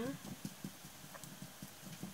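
Paintbrush bristles tapping paint onto a textured bottle: a quick, irregular run of faint dabbing taps, stippling on a sandy texture.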